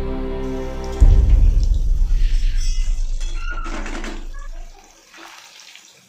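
Background music for about a second, then balls of palm-fruit batter deep-frying in hot oil in a wok: sizzling and bubbling, loud at first and fading to a faint sizzle near the end.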